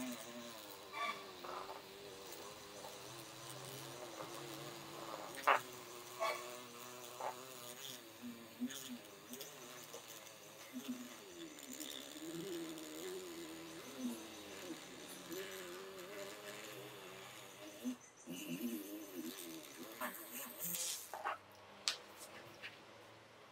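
A small electric drill runs with a fine bit, boring through the crimped metal pin of a two-pin fluorescent lamp's plastic base. It makes a thin buzz that wavers in pitch as the bit loads up, with a couple of sharp clicks about five to six seconds in.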